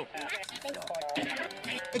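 A television being channel-surfed very fast: brief snatches of different programmes' voices and music cut one after another, with quick clicks between them.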